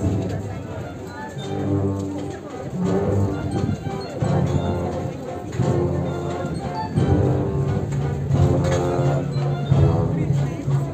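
Brass band playing a slow processional march, long held chords with a strong low bass line, over the murmur of a crowd.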